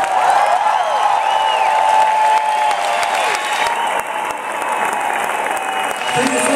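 Concert audience applauding and cheering just after a song ends, with a few high shouts rising and falling over the steady clapping.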